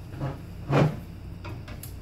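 A short thump about three quarters of a second in, with a softer knock just before it and a few faint clicks later, over a steady low hum.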